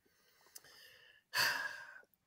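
A man's short, audible sigh or breath about a second and a half in, after near silence.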